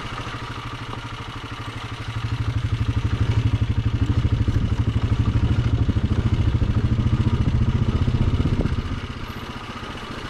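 Honda ATV engine running at light throttle, then opened up about two seconds in and held with a steady pulsing note for about six seconds, easing off again near the end.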